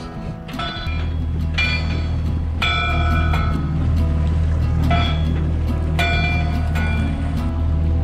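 Navigation bell buoy's bell clanging irregularly as the waves rock it. There is a strike about every second, each ringing on briefly, over a steady low rumble.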